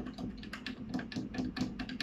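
Metal teaspoon stirring Turkish coffee in a small copper cezve on the burner, clicking against the pot's sides about six times a second. This is the short stir partway through brewing that raises the pale foam on top.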